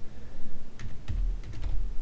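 Computer keyboard keys clicking as a short command is typed: a handful of quick keystrokes in the second half.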